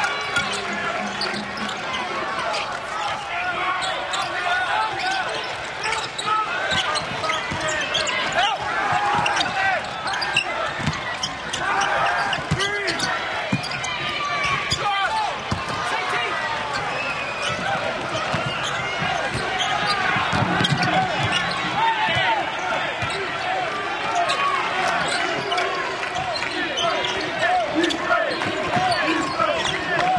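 Basketball being dribbled on a hardwood court during live play, mixed with voices and steady crowd noise.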